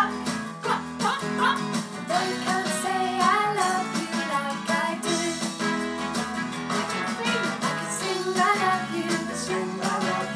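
A children's song playing with strummed acoustic guitar and singing voices, a woman's among them.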